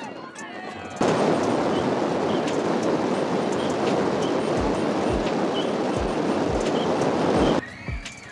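Heavy wind noise on the microphone of a camera moving with the cyclists: a loud, steady rushing that cuts in suddenly about a second in and cuts off near the end. A slow, low beat of background music runs under its second half.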